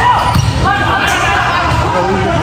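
Voices calling and shouting in a large echoing hall during a volleyball match, over a steady din of the game, with thuds of the ball.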